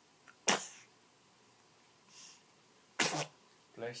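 A baby sneezing twice, two short sharp sneezes about two and a half seconds apart, followed near the end by an adult voice saying what sounds like "bless you".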